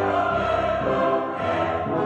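Live opera music: a chorus singing sustained notes with the orchestra.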